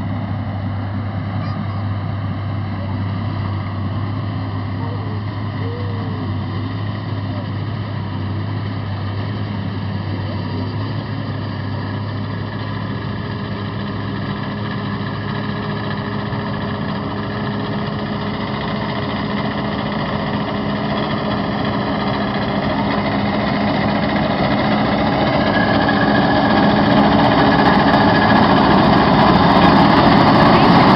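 Oliver tractor with a mounted corn picker running steadily, its engine drone growing louder over the second half as the machine approaches.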